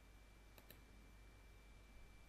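Two quick, faint computer-mouse clicks a little over half a second in, over near-silent room tone with a low hum.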